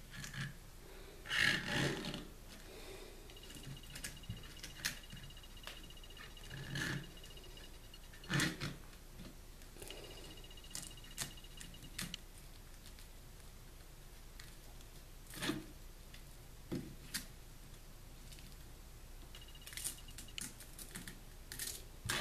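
Hands handling plastic paint bottles in PVC pipe holders and fitting straps over them: scattered light clicks, knocks and rustles, with a few louder bumps about 2 s in and 8 s in.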